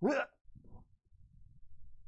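A man's voice starts a drawn-out "all—", then faint rustling and handling noises as he leans over a desk reaching behind a camera for a small device.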